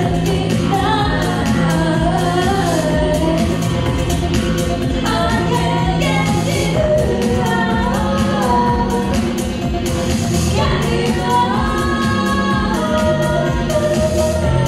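A woman singing full-voiced over a six-string electric bass, a Yamaha TRB 1006J played through a 1970s Ampeg SVT amplifier, its low notes held and changing every second or two under the sung melody.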